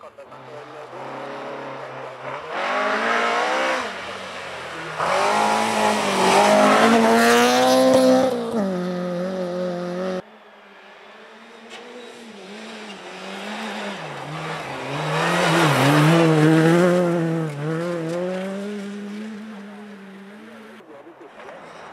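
Rally cars driven hard through a bend on a snowy stage, one after another: engine revs climbing and dropping in steps through gear changes as each car approaches and passes. The first car's sound cuts off abruptly about ten seconds in, and a second car is then heard approaching, loudest about six seconds later.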